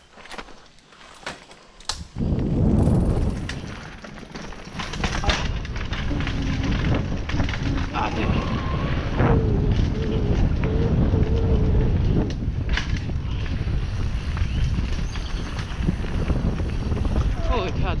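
Full-suspension mountain bike riding fast down a rough dirt trail, heard from a helmet camera: after a quieter stretch of light clicks, a loud steady rumble of wind on the microphone and tyre and frame rattle starts about two seconds in. Faint held tones sit over the rumble in the middle.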